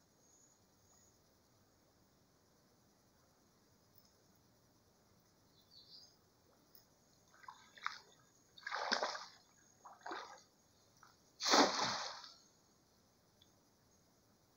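Cast net being readied with a few short, faint handling noises, then thrown: it lands on the creek water with a splash near the end, the loudest sound.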